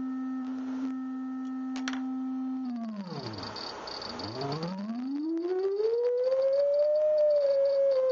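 Synthesizer sine-wave oscillator tone passing through a four-pole vactrol lowpass filter. It holds one pitch, then about three seconds in slides down to a low growl and fades. It then rises smoothly back up to a higher pitch, as the oscillator frequency is swept by hand to look for the filter's resonance peak.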